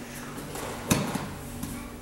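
A single sharp thump about a second in, with a few small knocks just after it: a person's body landing on a training mat during an arm-lock takedown. A steady low hum runs underneath.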